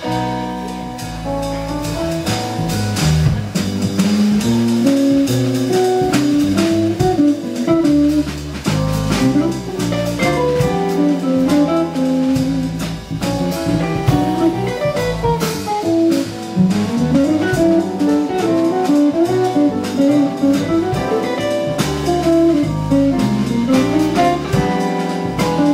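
Live small-group jazz: electric bass guitar, archtop electric guitar and drum kit playing together, with a melody line winding up and down over the bass notes and cymbal strokes.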